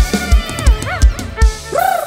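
Live Isan band music from a rot hae sound-truck stage: a heavy kick drum at a steady pulse of about three beats a second under a lead melody whose notes slide up and down in pitch.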